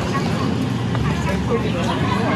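A man's voice speaking briefly over a steady low rumble.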